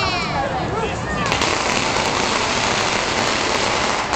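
A string of firecrackers going off in a rapid, continuous crackle that sets in about a second in and cuts off suddenly near the end, with crowd voices before it starts.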